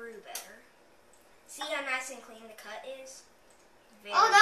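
Quiet speech: a child's voice talking in short phrases, with pauses between.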